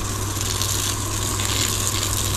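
Garden hose spray wand pouring a steady stream of water onto the mulched soil of a potted plant, a continuous hiss and splash, with a steady low hum underneath.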